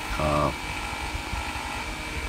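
Steady mechanical background hum with a low rumble, and a short voiced 'um' about a quarter second in.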